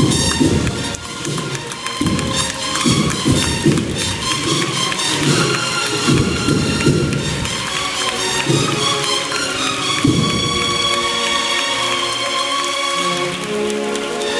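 A cornetas y tambores band of valveless bugles and drums playing a procession march live: rapid drum strokes run under sustained bugle lines. After about ten seconds the drumming thins out, leaving held bugle chords.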